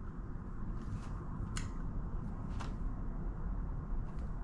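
A few small, sharp clicks from a camera being handled, over steady low room noise.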